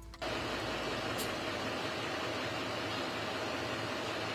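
Steady outdoor background noise with a faint steady hum, cutting in abruptly just after the start.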